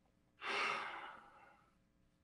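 A man's sigh: one long breathy exhale of about a second that starts strongly and fades away.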